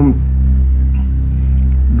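Loud, steady low drone, a sustained deep background tone that holds without change.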